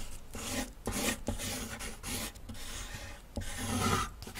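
Sound effect of a pencil sketching quickly on paper: a run of short scratchy strokes, some louder than others.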